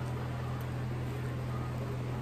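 Steady low hum with an even background hiss, holding level with no distinct events.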